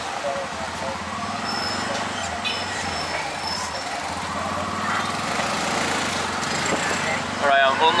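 A tuk-tuk's engine running steadily as it drives through city traffic, heard from inside the passenger cab.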